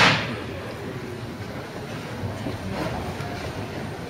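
Sparse electronic stage sound through a hall's PA: a loud, echoing percussive hit dies away at the start, then a low steady rumble with a fainter hit about three seconds in.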